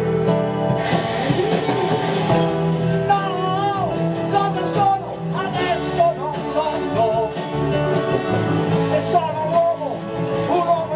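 Live band music in an instrumental passage: acoustic guitar accompaniment under a wavering, bending lead melody line.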